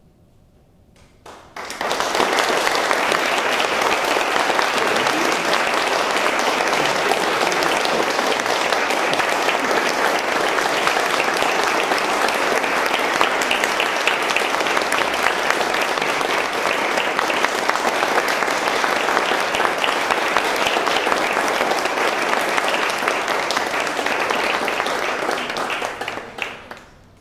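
Audience applauding: the clapping breaks out suddenly about a second and a half in, holds steady and loud, and dies away at the very end.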